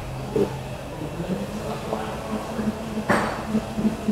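Steady low hum under faint public-place background noise, with a brief hiss about three seconds in.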